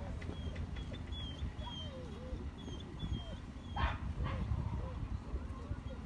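An animal's short pitched calls, repeated about every half second, with thin high chirps above them and a steady low rumble underneath.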